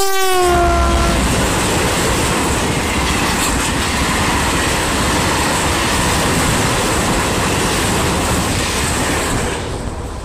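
Class 335 diesel locomotive passing close at speed, its horn chord falling in pitch as it goes by and cutting off about a second in. Then comes the steady loud rumble and clatter of a long container freight train's wagons passing on the track, easing off near the end as the last wagon goes by.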